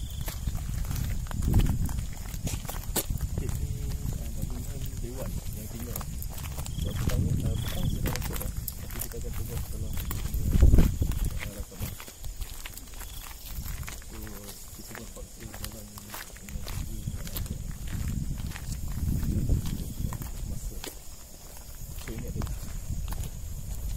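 Footsteps and handheld-camera handling noise while walking along a paved road, with a louder thump about a second and a half in and another about halfway through. A steady high-pitched drone runs underneath, with faint voices.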